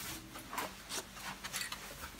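Quiet rubbing and a few soft handling knocks as an aerosol spray can is picked up and brought close to a handheld phone's microphone.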